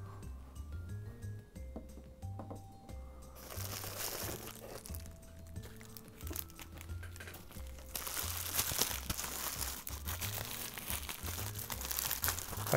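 Plastic bubble wrap crinkling and rustling in the hands as a toy is unwrapped, starting about three seconds in and getting louder from about eight seconds in. Background music with a steady bass beat plays under it.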